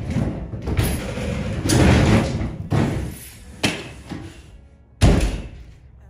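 A laminate kitchen countertop being pried and wrenched off a base cabinet in demolition: about six hard bangs with noisy tearing and scraping between them, the loudest about five seconds in.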